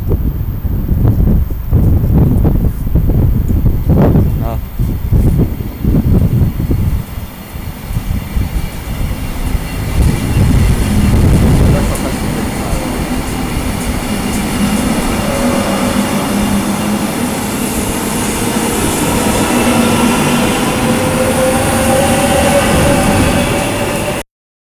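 SNCB AM96 electric multiple unit running into the station past the platform: a heavy rumble as the carriages go by, then a steady run with drawn-out whining, squealing tones over the last half.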